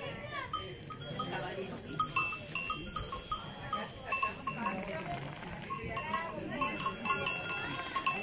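A sheep's collar bell clanking again and again, more often in the last few seconds, over people talking.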